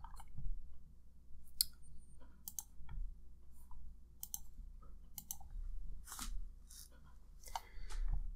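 Scattered, irregular clicks of a computer mouse and keyboard, about one or two a second.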